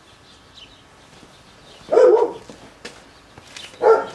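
A dog barks twice, once about two seconds in and again near the end.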